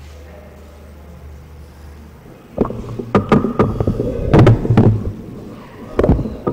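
A steady low hum, then from about two and a half seconds in a run of loud, irregular knocks and thumps.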